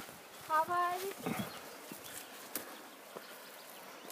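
A short spoken word about half a second in, then quiet outdoor ambience with faint scattered clicks and rustles of footsteps on a forest path.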